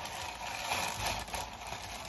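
Plastic packaging crinkling and rustling: a poly mailer bag being handled and a garment in a clear plastic bag pulled out of it.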